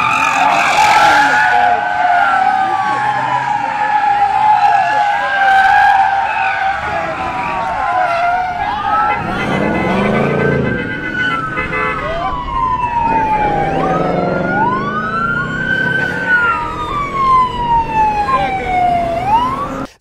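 Police sirens wailing, several at once, their pitch sweeping slowly up and down and overlapping, clearest in the second half.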